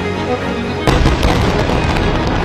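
Background music, broken about a second in by a sudden loud explosion, followed by rumbling and scattered crackles.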